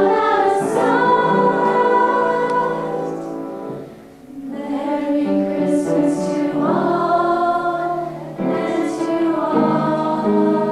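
A group of teenage girls singing together in unison, with sustained notes and a short breath pause about four seconds in.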